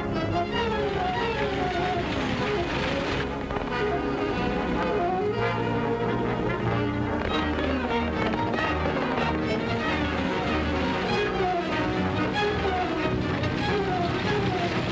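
Orchestral chase music with brass, playing repeated falling phrases at a steady, loud level.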